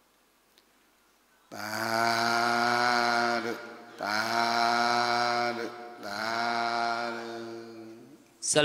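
A man's voice chanting three long held syllables, each about two seconds, all at the same steady low pitch. The first begins about one and a half seconds in, after near silence.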